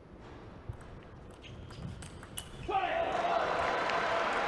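A table tennis rally: a run of sharp clicks of the celluloid ball off bats and table. Near the end of the third second the point ends and the arena crowd breaks into loud applause and cheering.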